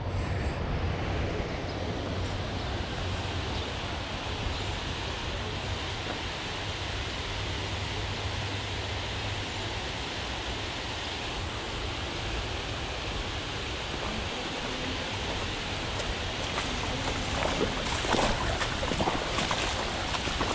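Steady rush of water pouring over a concrete weir into a shallow creek, with some wind on the microphone. A few short clatters come near the end.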